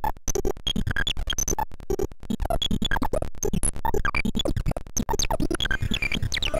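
Homemade CMOS synthesizer circuit: a CD4023 pulse-width-modulation oscillator whose pitch is set by random control voltage from a 4-bit pseudo-random generator, giving a fast stream of short electronic bleeps that jump at random in pitch several times a second, with clicks between them.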